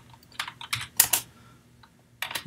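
Typing on a computer keyboard: a quick run of about half a dozen keystrokes, the two loudest about a second in.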